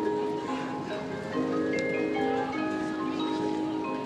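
Marching band music in a slow passage of held notes and chords, with the front ensemble's mallet percussion (marimba and glockenspiel) prominent.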